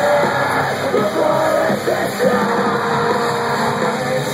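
Metalcore band playing live, with electric guitars and yelled vocals over them, recorded on a phone among the crowd.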